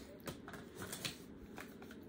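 Faint handling of cosmetic packaging: a few light clicks and rustles as a small cardboard product box is picked up.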